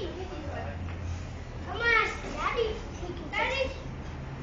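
High-pitched children's voices calling out without clear words, loudest about halfway through and again near the end, over a low steady hum.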